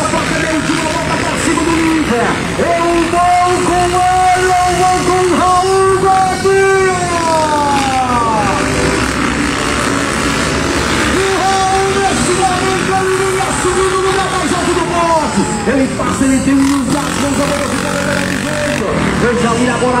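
Trail dirt-bike engines running at high revs as the bikes race round a dirt track. The engine note holds steady for several seconds, then falls in pitch twice, about seven seconds in and again past the middle.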